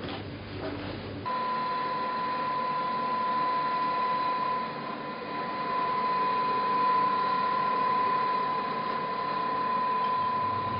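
Steady high electrical whine of laboratory equipment, one unchanging tone with fainter overtones that sets in about a second in and holds without a break.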